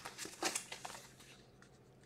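A few light clicks and rustles of handling in the first second or so, the loudest about half a second in, then quiet.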